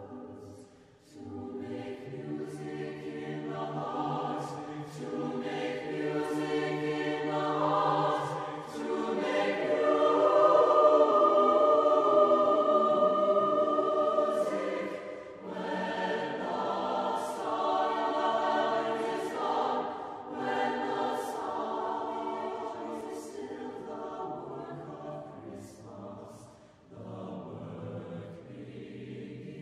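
Choir singing a slow choral piece in several parts, swelling to its loudest about halfway through, with brief breaths between phrases near the start and near the end.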